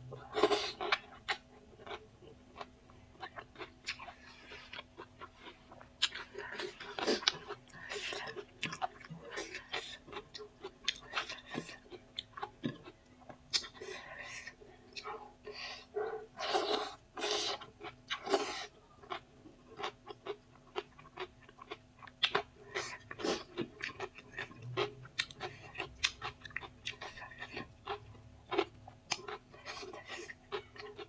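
Close-miked eating sounds of someone chewing spicy chow mein noodles and cucumber salad eaten by hand: many irregular wet mouth clicks and smacks, with a few longer chewing bursts.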